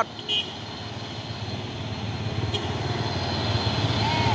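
Heavy diesel trucks, led by a Mitsubishi Fuso cargo truck, running slowly past close by in a line of traffic; the low engine sound grows steadily louder.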